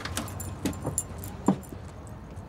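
A handful of short, light clinks and knocks with a bright metallic jingle, over a low background rumble.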